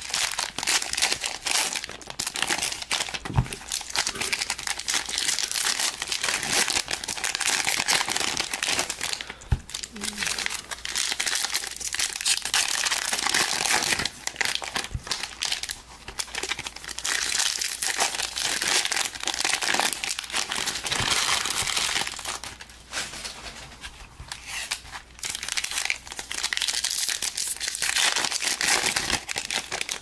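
Foil trading-card packs being handled and torn open: steady crinkling of the metallic foil wrappers and rustling of cards, dipping quieter for a few seconds past the two-thirds mark.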